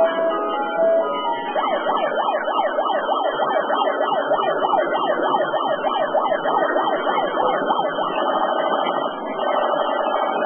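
A siren yelping, its pitch sweeping up and down about three times a second, changing to a steadier pulsing tone near the end.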